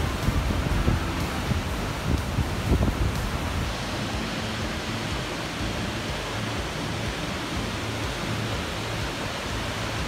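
Steady rushing of Vernal Fall, a large waterfall in heavy flow, heard from close below. For the first few seconds, uneven gusts of wind buffet the microphone; after that the rushing settles and stays even.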